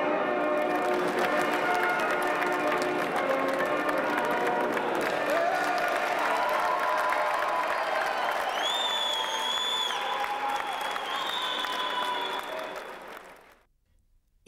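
An audience applauding steadily, with voices and a couple of high held whistle-like tones mixed in, fading out about a second before the end.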